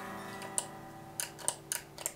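An electric guitar chord ringing out and slowly fading, with a few light clicks of a small effects pedal and its cable plugs being handled.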